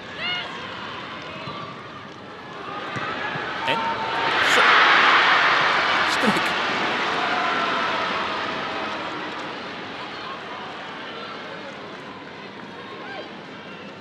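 Stadium crowd noise that swells to a loud roar about four to five seconds in, then slowly dies away.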